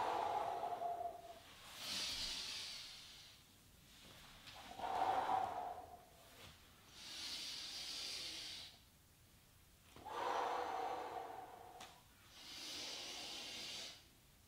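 A man breathing deeply and audibly in time with slow exercise movements, in and out about three times. The breaths alternate between a lower, fuller breath and a higher hissing one, each lasting a second or two with short pauses between.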